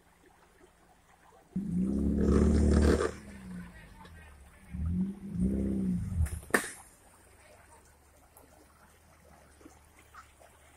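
Off-road 4x4's engine revving hard in two bursts, about a second and a half in and again around five seconds, the second rising and falling in pitch, as the vehicle strains to climb out of a rocky stream bed. A single sharp crack follows the second burst.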